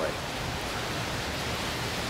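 Steady, even hiss of background noise with no distinct sound in it.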